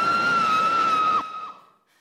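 A woman screaming on a roller coaster: one long, high scream held at a steady pitch over a rush of ride noise. The scream cuts off about a second in, and the noise fades away soon after.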